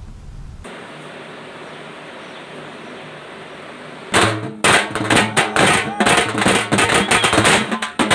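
A steady hum of crowd and street noise, then, about four seconds in, loud, fast drumming with sharp strikes breaks in and carries on.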